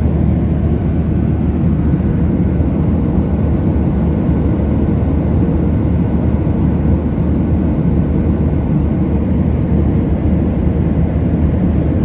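Steady, low-pitched cabin noise of an airliner in flight, the engines and rushing air heard from inside the cabin.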